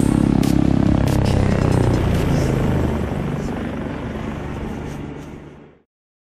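Helicopter rotor and engine running steadily, mixed with background music, the whole track fading out to silence about a second before the end.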